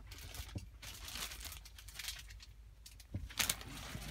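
Plastic protective sheeting on a car seat crinkling and rustling in several irregular bursts, the loudest near the end.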